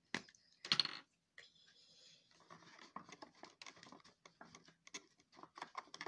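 Paper being handled and crinkled: a click and a louder rustle within the first second, then from about two and a half seconds a run of small rapid crackles and taps.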